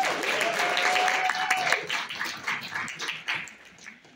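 Audience applauding the next speaker, dying away over the last second or so, with one long held call from someone in the crowd over the first couple of seconds.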